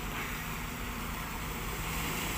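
Steady low diesel engine rumble from a Sumitomo long-arm amphibious excavator working on the river.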